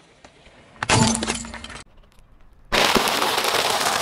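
A hard red plastic case cracks and breaks under a car tyre about a second in. Then a bag of dry egg noodles is crushed under a tyre, with continuous crunching and crackling over the last second or so.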